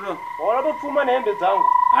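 A man talking, with a steady high-pitched tone held under his voice that grows louder about one and a half seconds in.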